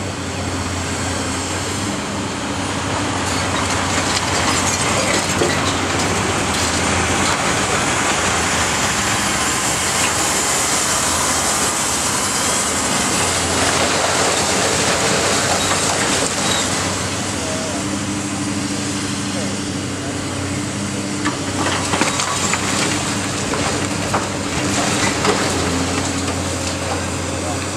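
Diesel engines of a high-reach demolition excavator working on a brick building run steadily. A dump truck passes close by near the middle, its rushing noise swelling and then fading. A few sharp knocks come near the end.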